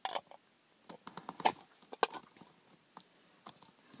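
Handling noise: a few scattered clicks and knocks as something is fumbled with in an attempt to close it, the sharpest two about one and a half and two seconds in.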